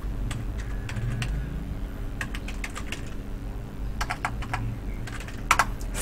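Typing on a computer keyboard: irregular runs of key clicks, with a few louder clicks near the end.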